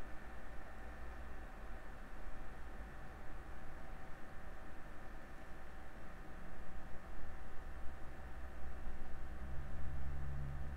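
Quiet room tone: a steady low hum with faint thin whines from running computer equipment. A low rumble grows a little stronger in the last few seconds.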